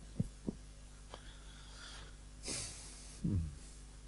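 Handling noise from a head-worn microphone being adjusted at the ears: two short thumps near the start, then a breath-like rush into the mic about two and a half seconds in and a low knock just after.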